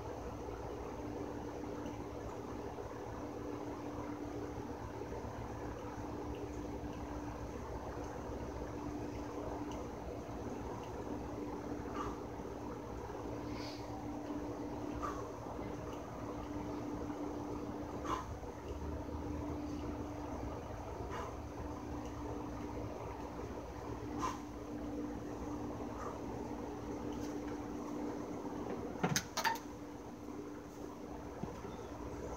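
A steady low hum runs throughout, with a few faint scattered clicks. About a second before the end come two or three sharp clacks of light dumbbells being set down on a patio table.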